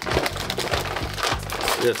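Foil Pokémon booster pack wrapper crinkling as it is handled and torn open.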